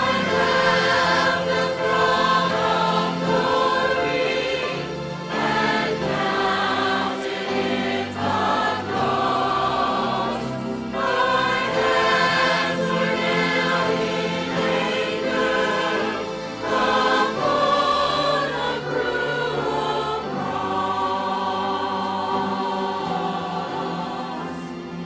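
A mixed choir of men's and women's voices singing together, directed by a conductor.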